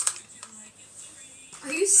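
A sharp plastic click from a spring airsoft pistol being handled, with a couple of fainter clicks just after. A person's voice starts speaking near the end.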